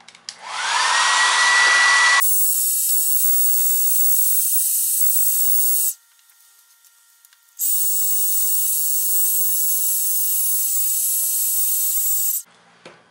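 Handheld hair dryer switched on: its motor whine rises as it spins up, then it blows steadily with a loud rush of air, heating the smartwatch to soften its adhesive. The sound cuts off abruptly about six seconds in and comes back a second and a half later.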